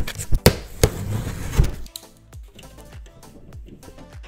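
A cardboard box being slit open with a box cutter and pulled apart: sharp rips and knocks for about the first two seconds. Background music with a steady beat runs throughout and is left alone after the ripping stops.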